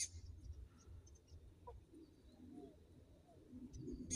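Quiet outdoor ambience with faint, scattered short bird chirps over a low rumble, and a small click at the very start.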